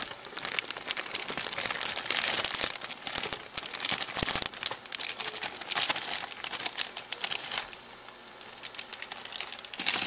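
Plastic bag of baby carrots crinkling and rustling as carrots are taken out by hand, a dense crackling that thins out about eight seconds in.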